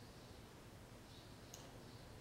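Near silence: room tone, with one faint short click about one and a half seconds in.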